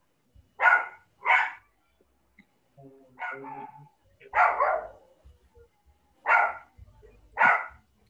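A dog barking about six times, in short single barks spaced a second or more apart.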